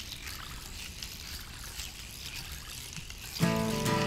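Light splashing and trickling of shallow swamp water as a Florida water snake is lowered in by hand and swims off. Guitar music starts suddenly near the end and is the loudest sound.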